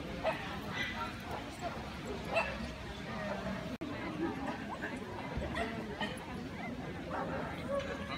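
A dog barking several times in short separate barks, over people talking in the background.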